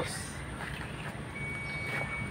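Low, steady vehicle rumble, with a thin high beep-like tone held for about a second near the end.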